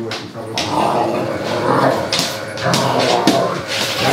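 A German shepherd and a black dog play fighting, growling at each other continuously.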